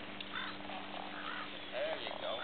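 Faint, distant talking in short snatches over a steady low hum.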